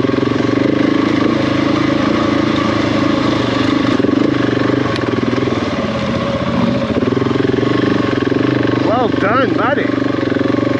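Adventure motorcycle engine running steadily at low revs while the bike rides along a trail.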